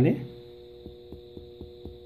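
Finger-on-finger chest percussion over the lowest left intercostal space in the anterior axillary line: a series of light taps, about four a second, from about half a second in. The note is resonant, the finding against an enlarged spleen in the splenic percussion sign.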